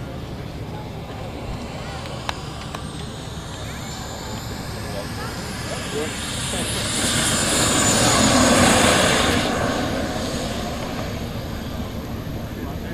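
Kerosene turbine of an RC Viper model jet whining and rushing as the jet lands and runs past. The sound swells to its loudest about eight to nine seconds in, its high whine falling slightly in pitch, then fades as the jet rolls away.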